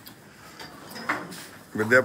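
Faint rustling and light knocks of belongings being handled and packed into a cloth bag. A voice starts near the end.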